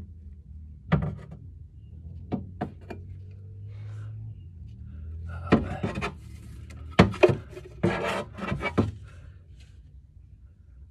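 Clicks, knocks and scraping of a car alarm siren being handled and seated in its metal bracket inside the wheel arch: one sharp knock about a second in, a few light clicks, then a run of louder knocks and scraping in the second half. A steady low hum runs underneath.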